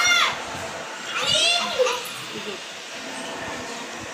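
Children's high-pitched shouts at play, one right at the start and another about a second and a half in, over a low background of room noise.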